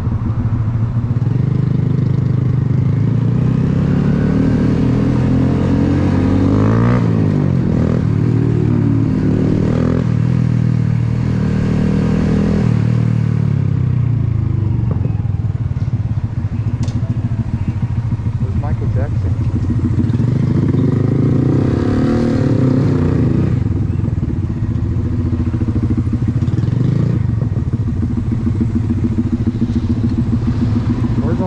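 Honda Grom's small single-cylinder four-stroke engine heard from the rider's seat while riding slowly in heavy traffic, its pitch rising and falling as it pulls away and eases off, most clearly about four to ten seconds in and again a little past twenty seconds.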